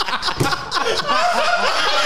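Several men laughing together in short snickers and chuckles, with a few words mixed in.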